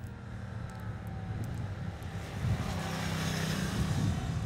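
Motorcycle engine running as the bike rides past, getting louder after about two and a half seconds as it nears and passes.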